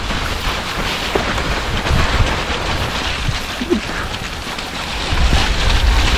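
Mountain-bike tyres rolling over slushy snow and mud, a steady crackling hiss, with wind rumbling on the microphone.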